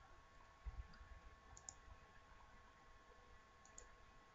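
Near silence: faint room tone with two soft pairs of computer mouse clicks, about a second and a half in and near the end.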